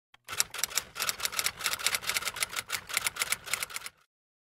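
Typewriter sound effect: a fast run of key clicks, about eight a second, stopping just before the end.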